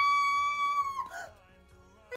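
A woman's long, high-pitched cry of "noooo", held on one steady note for about a second and then breaking off. It is followed by near silence.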